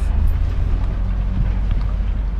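Pickup truck running and rolling across a dirt yard, heard from inside the cab as a steady low rumble.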